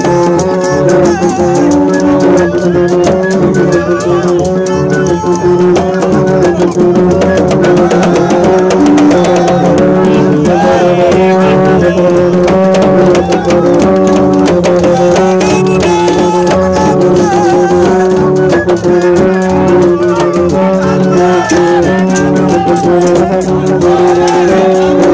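Live gagá music: drums and rattles play a fast, dense rhythm over repeated held low notes from wind instruments, with voices singing.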